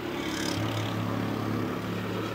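A steady low engine hum, growing a little stronger about half a second in.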